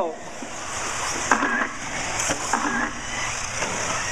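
Eighth-scale radio-controlled off-road buggies running around the track: a steady, high-pitched buzz over a haze of noise.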